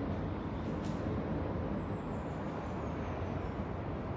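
Steady low rumble of background noise, without a clear pitch or rhythm.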